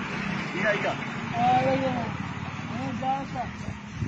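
People talking over a steady hum of road traffic.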